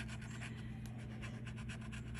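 A bottle-opener scratcher tool scraping the latex coating off a scratch-off lottery ticket in many quick, light strokes.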